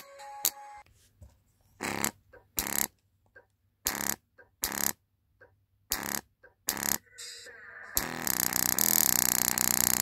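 A bare small full-range speaker driver from a JBL Go 2, overdriven with bass-heavy audio so that its cone flaps and distorts. It gives a series of short distorted blasts with silent gaps, then from about eight seconds a continuous loud, harsh distorted sound.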